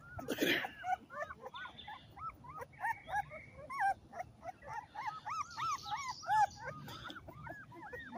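A two-week-old pit bull puppy whimpering in a rapid run of short, high squeaks, several a second, while being held up. About half a second in there is a brief knock of handling.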